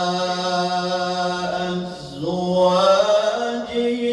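A male qari chanting Quranic tilawah through a microphone: long held, ornamented notes. About halfway through there is a brief break, and then the voice climbs and settles on a higher sustained note.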